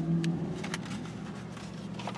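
A 383 V8 idling steadily, heard from inside the car's cabin. The low hum eases off slightly over the two seconds, and a few faint clicks sit on top of it.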